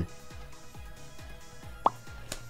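Quiet background music with a steady low beat. Near the end, a short rising 'bloop' pop sound effect.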